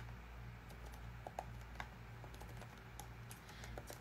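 Faint typing: scattered, irregular key clicks as a short message is written.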